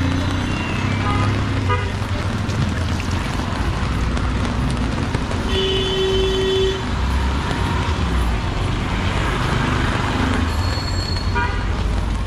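Busy city street on a wet road: steady traffic and tyre noise, with a vehicle horn sounding once for about a second near the middle.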